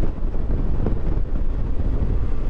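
Wind rushing over the microphone, mixed with the steady drone of a 2020 Suzuki V-Strom 650's V-twin engine, cruising at an even speed without revving up or down.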